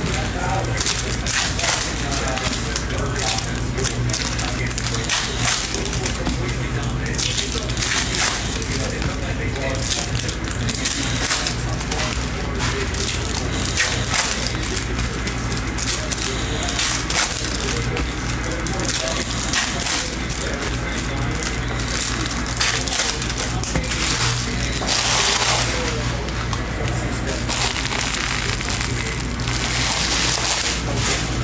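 Foil trading-card pack wrappers crinkling and tearing, with cards shuffled and flicked in the hands, over steady background music. A longer, louder crinkle comes near the end.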